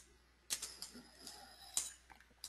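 Faint keystrokes on a computer keyboard: a few separate key presses starting about half a second in, the loudest near the end.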